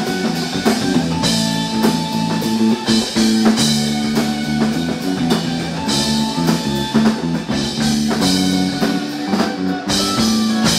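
Live jam-band funk played on two electric guitars, electric bass and drum kit, an instrumental passage with no singing.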